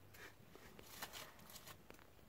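Faint, scattered rustles and small ticks of loose soil and stones as a dog noses and scrapes into the earth of her den, close to near silence.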